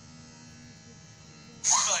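A faint, steady low hum with a thin buzz, then laughter breaks in near the end.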